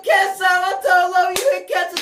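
A high-pitched voice in short held notes, with one sharp clap about one and a half seconds in.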